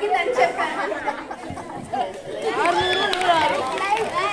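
People talking, with voices overlapping in chatter; one voice stands out most clearly a little past the middle.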